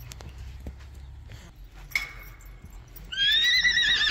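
About three seconds in, a horse breaks into a loud, long whinny that wavers in pitch. It is a penned horse calling out, restless and agitated after another horse has been led away.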